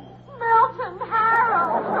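A person's voice wailing with a wavering, up-and-down pitch, starting about half a second in.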